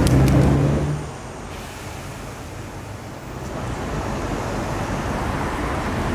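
Bass-heavy music ends about a second in, leaving city road traffic noise: a steady hum of passing vehicles that swells louder midway and then holds.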